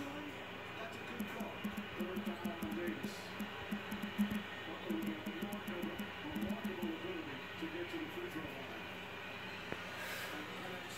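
Basketball game broadcast playing faintly on a television: a commentator's distant voice over arena sound, with scattered faint clicks.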